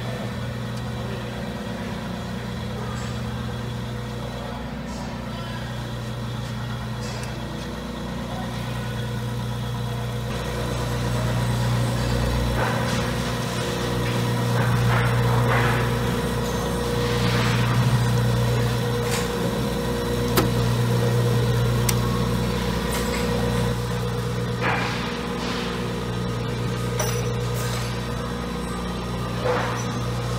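Electric motor of a tappet (hydraulic-lifter) grinder running with a steady hum that swells and fades over the middle of the stretch, with a few light clicks and knocks toward the end.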